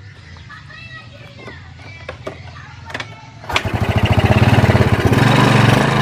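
Yamaha Mio scooter's single-cylinder four-stroke engine idling quietly, then about three and a half seconds in the throttle is opened and it revs up and holds at higher revs. The vacuum carburettor's top cover is off, and its slide is not lifting as the engine is revved.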